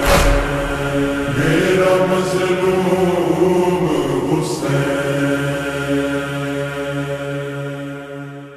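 Slowed-and-reverb Urdu noha: a voice chanting a lament, drenched in reverb over a sustained vocal drone. From about halfway it settles into a long held note and fades out toward the end.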